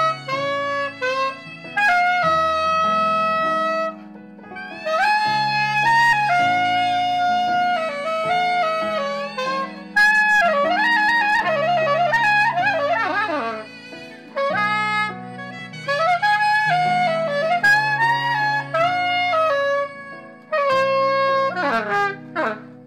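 Soprano saxophone playing a slow melody in phrases of long held notes, with a quick wavering run about halfway through, over an accompaniment of sustained low notes.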